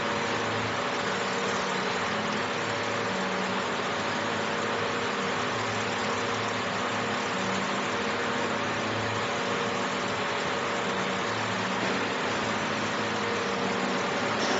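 Fiber laser marking machine with a rotary axis running while it engraves around a turned part: a steady whirring hum with a constant tone, and a lower hum that comes and goes every second or so.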